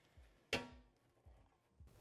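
A single light knock about half a second in, with a short ringing fade, as a plastic filler panel is set against a metal roll cage; otherwise near silence.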